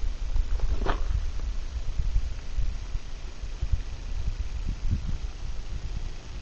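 Wind buffeting the camera's microphone, an irregular low rumble, with a brief louder rush about a second in.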